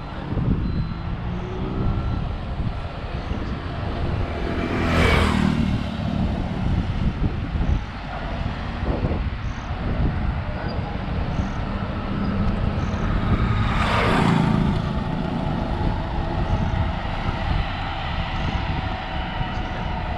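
Steady wind and road rumble from travelling along a paved highway, with two vehicles whooshing past close by, about five and fourteen seconds in.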